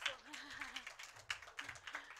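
A run of irregular sharp clicks and taps, several a second, with a brief wavering hum of a voice near the start.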